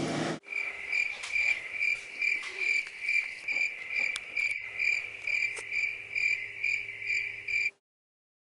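Cricket chirping, a short high chirp repeated about two and a half times a second, stopping suddenly near the end: the comic 'crickets' sound effect marking an awkward, empty silence.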